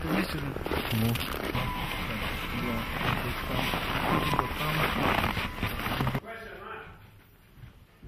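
Several men's voices talking indistinctly over one another, over a steady noisy hiss. About six seconds in the sound drops much quieter.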